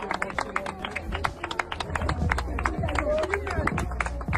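Scattered hand clapping from a small group, with voices talking and calling out over it.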